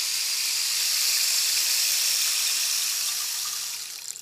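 A long rainstick-style tube filled with loose seashells, tilted so the shells trickle through it with a steady rain-like hiss that fades out near the end.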